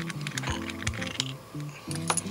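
Background music with a few light, irregular clicks and taps from a wristwatch case being handled between the fingers.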